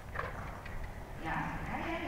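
Faint, muffled hoofbeats of a dressage horse trotting on soft arena footing as it moves into a half pass.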